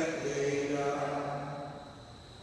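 Slow liturgical singing in church: a chant-like phrase sung on long held notes that dies away near the end.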